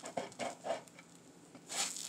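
Spatula edge sawing down through a toasted grilled cheese sandwich: a run of short crunches from the crisp bread, then a brief scrape of the spatula across the griddle surface near the end.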